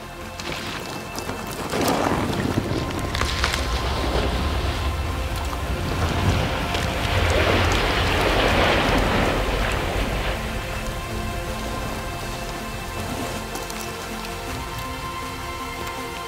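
Mountain bike tyres splashing through muddy trail puddles, the biggest splash about eight seconds in, over background music.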